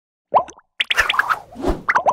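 Cartoon plop and pop sound effects for an animated logo: a quick rising plop, then a rapid run of short pops and clicks with a low thud, and rising chirps near the end.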